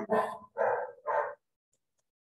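A dog barking three times in quick succession, the barks falling within the first second and a half.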